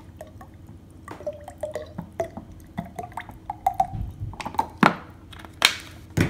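Olive oil glugging as it pours from a bottle into a small glass cruet, a run of short gurgling blips. Near the end, a few sharp knocks as bottles are set down and picked up on the tiled counter.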